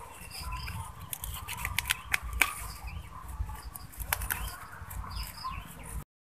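A knife cutting through a clump of thin green stalks at their base while the leaves rustle in the hand: an irregular run of sharp snips and clicks with leafy swishing.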